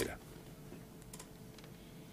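Two faint clicks over low studio room tone with a faint steady hum, in a pause between a man's sentences.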